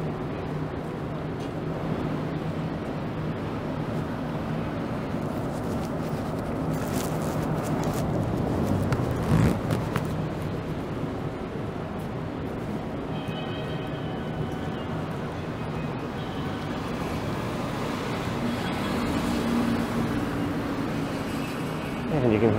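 City street traffic noise with cars going by, and faint steel drum music from a street performer. A brief louder noise comes about nine seconds in.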